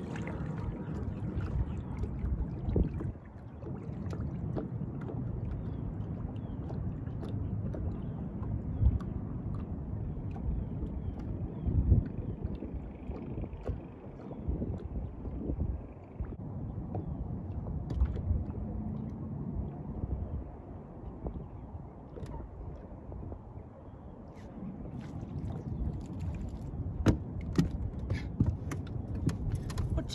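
Uneven low rumble of wind on the microphone and water around a boat hull on open water, with scattered small clicks and knocks. The clicks come more often near the end.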